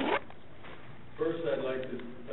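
A person speaking in short phrases, with a short burst of noise right at the start and talking again from a little past the middle.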